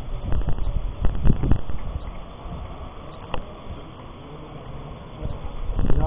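Wind rumbling on a camcorder microphone, in uneven gusts that are loudest in the first two seconds, then easing to a quieter, steady outdoor background.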